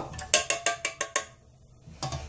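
A quick run of about seven light metallic clinks from steel kitchenware, a metal saucepan knocking against utensils or the bowl, stopping a little over a second in.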